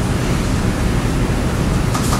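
Steady, even hiss of classroom background noise, with no speech.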